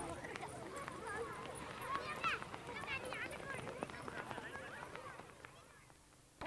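Many children's voices shouting and calling over one another as they run on a dirt field, with light footfalls. The sound fades toward the end.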